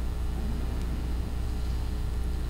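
A steady low hum in a large church, with faint shuffling as the congregation sits down in the pews.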